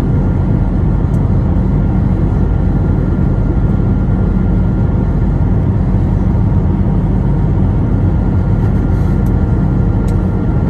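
Steady low cabin drone of an Airbus A321 on its approach to landing, heard from a window seat over the wing: engine and airflow noise with a faint steady hum in it.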